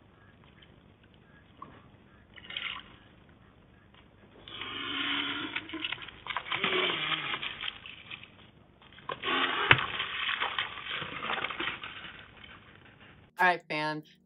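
Ostriches hissing in two long bouts, the first starting about four seconds in and the second right after it, heard through a webcam microphone with a narrow, muffled range.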